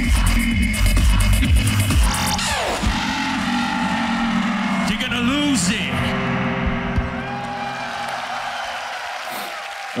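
Loop-station beatbox music: a heavy looped bass beat drops out about two and a half seconds in, followed by a falling pitch sweep and held layered vocal tones that thin out toward the end.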